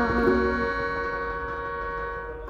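Final chord of a ukulele and melodica band ringing out and slowly fading away, with no new notes played.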